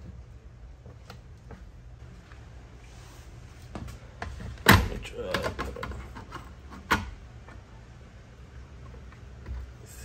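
Hard plastic side-mirror cover knocking and clicking against the mirror housing as it is pressed and worked onto its clips. The loudest sharp click comes about five seconds in, followed by a few smaller ones, and another sharp click two seconds later.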